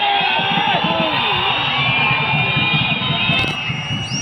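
Football stadium crowd, many voices shouting and chanting at once in a dense, continuous din.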